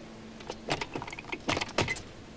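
A quick series of sharp knocks and thuds of a gymnast's feet and hands striking the wooden balance beam as the routine gets under way. They start about half a second in, and the loudest hits come about a second and a half in.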